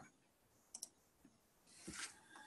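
Near silence, broken by two faint quick clicks a tenth of a second apart about three-quarters of a second in: a computer click advancing the presentation to the next slide. A faint soft sound follows near the end.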